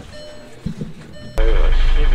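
Bus engine heard from inside the passenger cabin: after a quieter stretch with a brief low knock, a loud, steady low engine drone starts abruptly about 1.4 s in.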